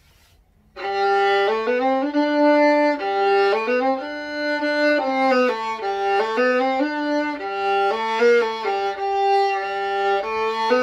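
Solo violin played with the bow: a slow melodic phrase that starts on a low note just under a second in and moves on through sustained, changing notes.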